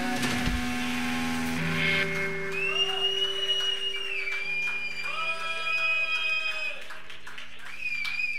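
Live rock band finishing a song: the full band stops on a last hit about half a second in, leaving electric guitars ringing out. A high steady tone is held for several seconds, with scattered claps.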